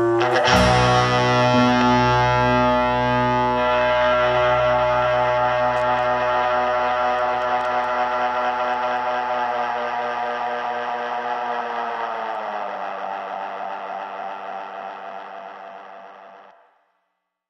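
The rock band's closing chord: a final hit on drums and cymbal just after the start, then a distorted electric guitar chord left ringing out. It fades slowly and sags a little in pitch near the end.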